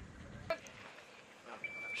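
Quiet outdoor background with a single sharp click about half a second in, then a short, steady high beep near the end.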